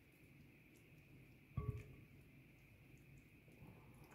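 Near silence with a faint steady hum. A single short knock about a second and a half in, a silicone spatula against a glass mixing bowl.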